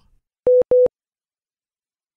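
Two short electronic beeps at one steady pitch, in quick succession.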